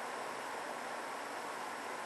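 Steady, even hiss that holds the same level throughout, with no distinct events.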